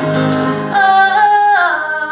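A woman singing live over acoustic guitar: a long held note that slides down in pitch near the end.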